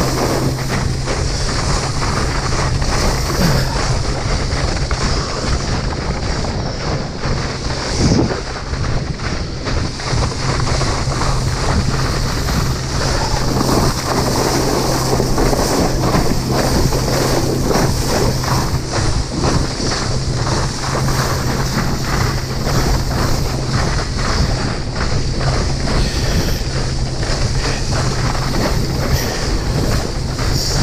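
Wind buffeting the microphone and water rushing and spraying under water skis towed at speed behind a motorboat, with a steady low hum underneath.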